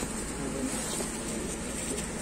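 Steady low rumble of vehicle noise at the roadside, with no single loud event.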